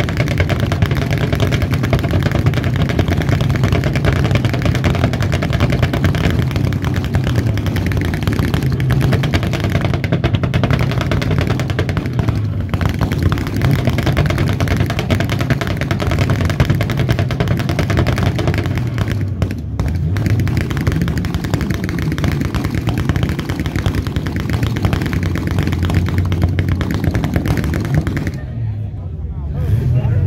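Car engines with loud exhausts running close by, their pitch rising and falling as they are revved, with a rapid crackling rattle throughout. The sound drops away briefly about two seconds before the end, then comes back.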